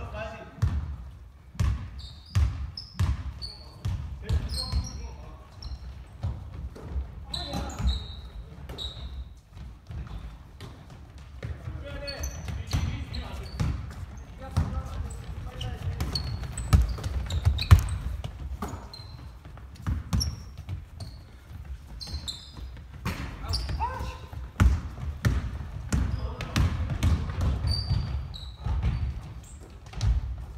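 A basketball game on a hardwood gym floor: the ball bouncing in repeated sharp knocks and sneakers squeaking in short high chirps, echoing in the large hall.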